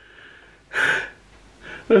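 A man's faint breathy exhale trailing off a laugh, then a sharp, gasp-like intake of breath just under a second in.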